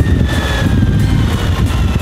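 Suzuki DL1000 V-Strom's V-twin engine slowing the motorcycle under engine braking after a downshift, a low rumble with a faint whine that slowly falls in pitch as the bike decelerates.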